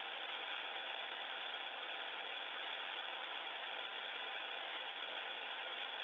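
Steady, even hiss of the International Space Station's open audio downlink between spoken turns, with a thin, radio-like sound.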